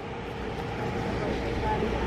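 Steady outdoor background noise with a low rumble and a light hiss, growing slightly louder toward the end.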